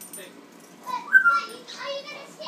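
African grey parrot vocalizing: a short whistled note about a second in, followed by speech-like chatter.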